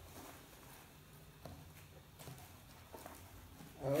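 A few faint, scattered soft taps and rustles from a cardboard box of powdered sugar being tipped and shaken over a bowl.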